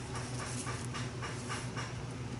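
White paint marker tip tapping on a paper tag, a quick run of light taps about four or five a second as dots are dabbed on. A steady low hum runs underneath.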